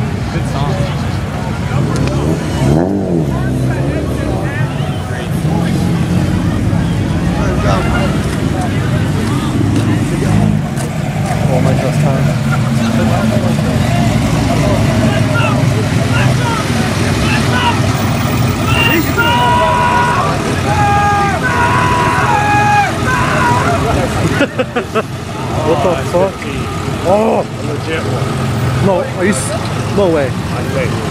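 Cars and pickup trucks driving slowly past with their engines running, over the chatter of a crowd. About twenty seconds in there is a short run of pitched tones stepping up and down.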